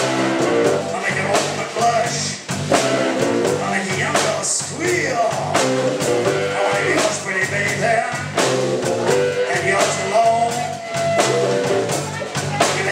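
Live blues band playing: amplified electric guitar over an electric bass line and a drum kit with a steady beat.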